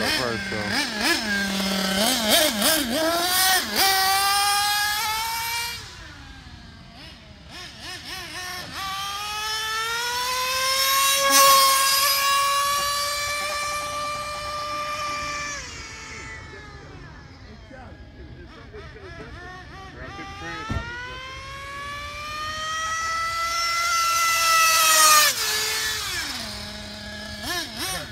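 Small nitro engine of an RC GT car in three long full-throttle runs, its pitch climbing steadily through each one and cutting off suddenly near 6, 16 and 25 seconds in. The pitch never drops back the way it would at a gear change: the two-speed transmission is not shifting up and its shift point needs adjusting.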